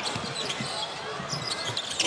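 A basketball being dribbled on a hardwood court, several low bounces, over steady arena crowd noise.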